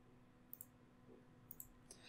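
Faint computer mouse clicks over near silence: a quick pair about half a second in, another pair about a second later, and one more just before the end.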